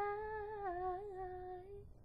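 A woman's solo unaccompanied voice holding one long wordless note, which dips slightly in pitch about two-thirds of the way through a second and then fades out near the end.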